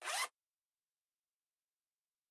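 A short zip, about a quarter of a second, right at the start, like a zipper pulled open on a small bag or purse.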